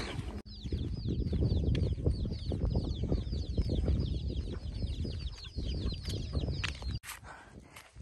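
Chickens in a wire-mesh coop calling: a rapid, steady run of high, falling peeps, several a second. The peeps start about half a second in and stop abruptly about a second before the end.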